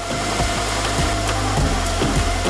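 A belt sander running steadily while a snowboard is pressed against its belt and ground, making a dense rushing grind. Background music plays underneath.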